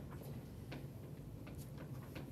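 Quiet classroom room tone: a low steady hum with a few faint, irregularly spaced clicks.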